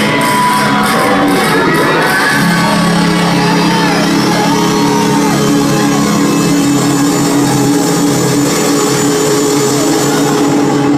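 Loud live hip-hop set heard in a large hall: a beat of sharp hits stops about two seconds in, and steady held low tones take over, with crowd shouts over the music.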